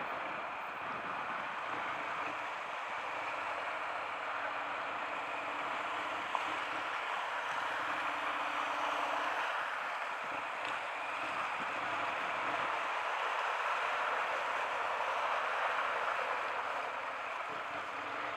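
Wheels rolling through shallow floodwater on a road, a steady hiss of water spray.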